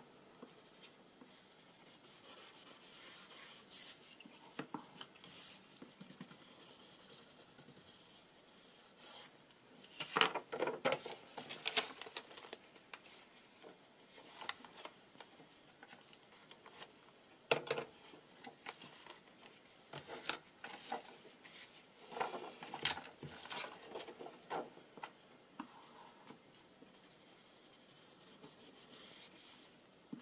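Small ink pad rubbed and dabbed along the torn edges of paper sheets, with paper rustling as the sheets are handled: intermittent scraping strokes, louder clusters about a third of the way in and again past two-thirds, and a few sharp clicks.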